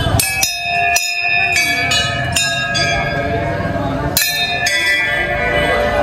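Brass temple bells rung by hand, struck several times in quick succession, each strike leaving a long ringing tone that overlaps the next, with a short pause before more strikes about four seconds in.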